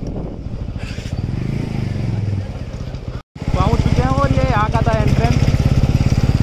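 Motorcycle engine running while riding, with a steady, even firing pulse. The sound drops out briefly about three seconds in. After that a person's voice is heard over the engine.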